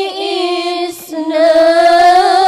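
A woman singing a sholawat solo into a microphone, holding long, slightly wavering notes, with a short break for breath about a second in.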